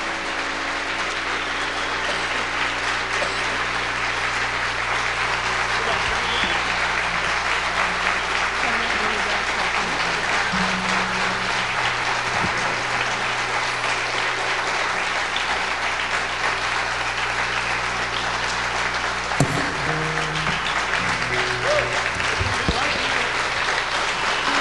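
Audience applauding, swelling a little over the first few seconds and then holding steady.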